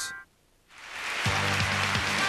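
A brief moment of silence at the end of a commercial break, then a TV segment's opening theme music swells in. A bright shimmering wash comes first, and after about a second come held bass notes over a steady beat.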